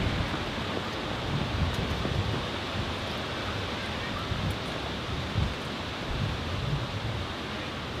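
Wind buffeting the microphone over a steady outdoor hiss, with irregular low gusts.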